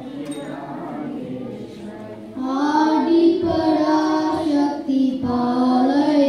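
A woman and children singing a Hindu devotional bhajan together into microphones. The singing is quieter at first and comes in much louder about two and a half seconds in, with long held notes.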